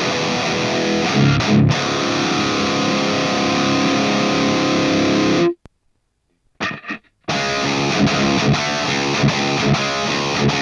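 Heavily distorted electric guitar riff: a Deviant Guitars Linchpin with a Heathen Fenrir pickup through a Neural DSP Quad Cortex amp profile and the Positive Grid Spark Cab, taken on a hard line rather than a microphone. Chugging chords give way to a long ringing chord, then the guitar is muted dead for about a second and a half, with two short stabs, before the riff starts again.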